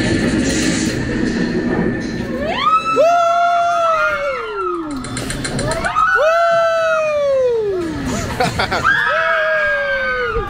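Passengers on the Tower of Terror drop-tower ride screaming together through its drops: three long screams, each rising briefly and then falling away in pitch, with several voices overlapping. The first two seconds carry a loud rushing noise.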